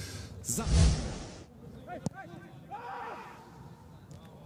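A low thump with a rushing noise that cuts off suddenly about a second and a half in, as the replay cuts back to live play. Then the quiet pitch-side sound of a football match in an empty stadium: faint players' shouts and a single sharp ball strike.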